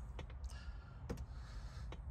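A few faint, sharp clicks and taps, four or so, spread out over a low steady rumble.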